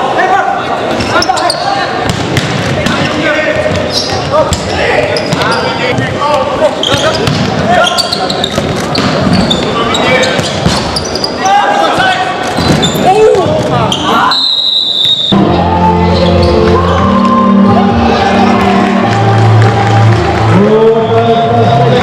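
Indoor hall football game sound: crowd voices and shouts over the knocks of a ball being kicked and bouncing on the hard sports-hall floor. About fourteen and a half seconds in, the game sound breaks off with a short high tone, and electronic background music starts.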